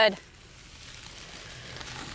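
Lamb chops sizzling faintly on the grate of a charcoal kettle grill over low heat, a steady soft hiss with small crackles.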